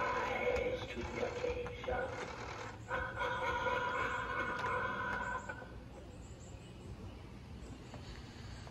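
Life-size Gemmy animatronic skeleton's built-in speaker playing one of its recorded voice lines in two stretches, with a short break about two seconds in, ending about five and a half seconds in. A low wind rumble runs underneath.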